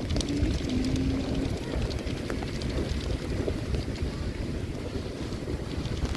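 Strong wind buffeting the microphone: a loud, ragged, uneven rumble.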